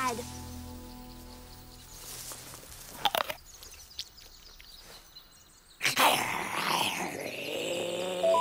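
Cartoon soundtrack with music and jungle ambience, with a few short chirps. A louder, fuller sound with gliding pitch comes in about six seconds in.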